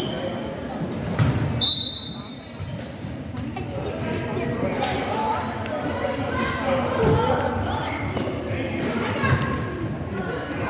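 Basketball bouncing and knocking on a hardwood gym floor, loudest a little over a second in, with voices of players and spectators echoing in the large hall.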